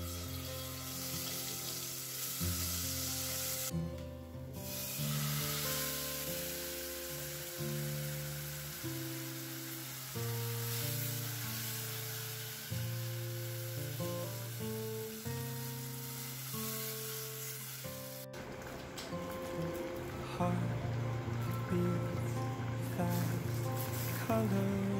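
Seasoning sizzling as it fries in pork fat in a steel saucepan, with cooked beans ladled into the hot pan, under background music of slow, held notes. The sizzling drops away suddenly about three-quarters of the way through, leaving mainly the music.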